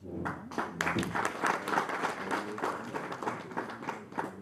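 Applause: many hands clapping in a quick, dense patter that starts just after the beginning.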